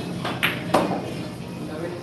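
A pool shot: two sharp clacks about a third of a second apart, the cue tip hitting the cue ball and then the cue ball striking another ball.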